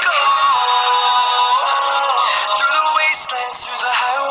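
Background music: a song with a sung vocal melody over a steady backing.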